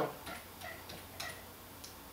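Computer keyboard keys being typed: four faint, separate clicks spread over about a second and a half, as a short command is keyed in.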